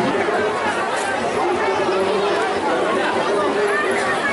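Crowd chatter: many people talking at once in a dense, steady babble.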